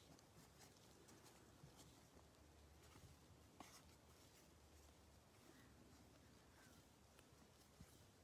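Near silence with faint, scattered soft ticks and rustles of trading cards being slid and flipped through a stack by gloved hands, one slightly louder click about three and a half seconds in.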